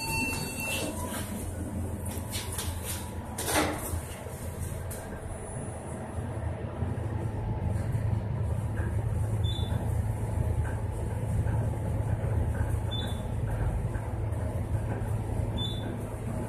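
Rebuilt Otis traction elevator car riding upward: a brief clatter about three and a half seconds in, then a steady low hum as the car travels. A short high beep sounds three times, once for each floor the car passes.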